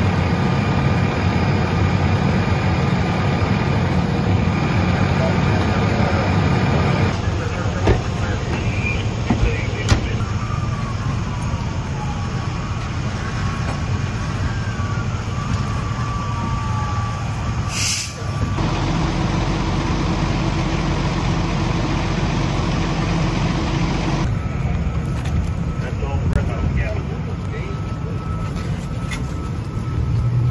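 Fire trucks' diesel engines idling with a steady low rumble, changing abruptly at several cuts. A short sharp hiss comes about eighteen seconds in.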